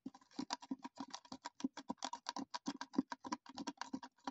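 Fingertips and nails tapping rapidly on plastic skincare packaging, about ten quick taps a second, in an even run.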